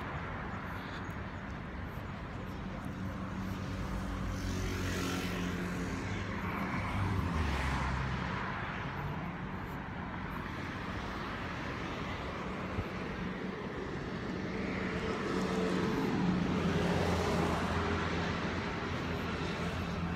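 Road traffic on a multi-lane street: a steady wash of vehicles going by, with louder passes swelling and fading about seven seconds in and again from about fifteen to eighteen seconds, the second carrying a low engine hum.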